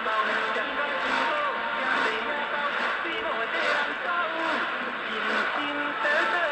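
A song on an AM medium-wave broadcast, played through a Sangean ATS-606 portable radio's speaker: a voice singing over music with a light beat about once a second, against the hiss of the received signal.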